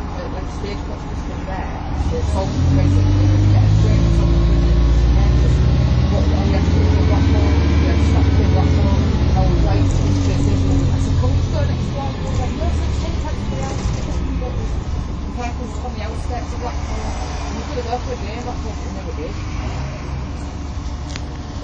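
MAN 18.240 LF bus's diesel engine heard from inside the saloon, getting louder about two seconds in as the bus accelerates, its pitch rising and falling through gear changes, then easing back to a steadier, quieter run from about twelve seconds in.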